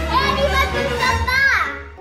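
A little girl's high voice exclaiming and talking, its pitch sliding up and down, over background music with a steady low bass.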